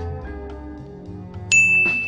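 A single bright, bell-like ding sound effect strikes about one and a half seconds in and rings on steadily, over soft background music.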